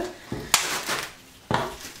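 Plastic cling wrap crinkling as it is pulled tight around a ball of pasta dough: two sharp crackles, about half a second in and again about a second later, each fading quickly.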